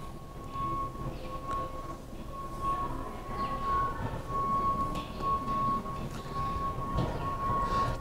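Big-box store background sound: a steady whining tone at one pitch over a low, even murmur, with a few soft rustles.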